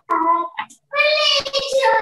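A child's high-pitched voice singing or drawn out in two short phrases, the second longer, cut off abruptly at the end.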